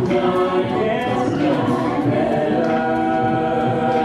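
An a cappella vocal group of men and women singing a carol in close harmony into microphones, with no instruments, settling into a long held chord in the second half.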